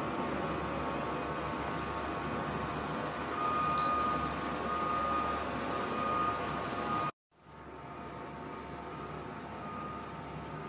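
Steady background hum with faint thin tones running through it. It drops out to silence for a moment about seven seconds in, at an edit, then returns a little quieter.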